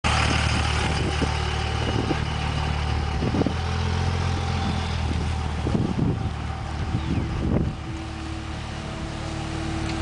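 Pickup truck engine idling: a steady low hum that drops away about six seconds in, with a few short knocks along the way. A single steady higher tone carries on near the end.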